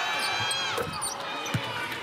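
Basketball bouncing once on the hardwood court, a sharp thud about one and a half seconds in, after a made free throw drops through the net. Before it, several high squeaks slide downward in pitch over steady arena crowd noise.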